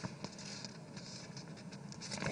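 Faint rustling of paper sheets being handled, with scattered soft ticks and crinkles.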